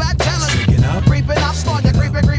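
Hip-hop track: a rapped vocal over a bass line and drum beat.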